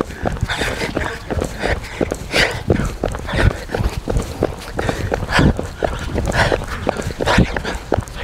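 Running footsteps on asphalt in a quick steady beat, with hard breathing in loud breaths about once a second.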